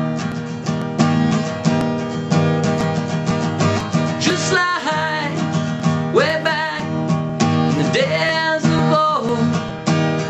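Acoustic guitar strummed steadily in chords. A man's voice comes in over it with three short sung phrases, from about the middle of the stretch to near its end.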